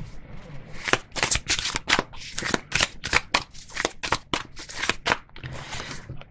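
A deck of oracle cards being shuffled by hand: a rapid, irregular run of sharp card slaps, about four a second, stopping shortly before the end.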